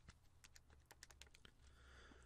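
Near silence: room tone with a few faint, sharp clicks in the first second or so.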